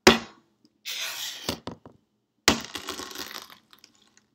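Shell of a hard-boiled egg cracked with a sharp tap, then crunching and crackling as the shell is crushed. A second sharp crack comes about two and a half seconds in, followed by another second of crunching shell.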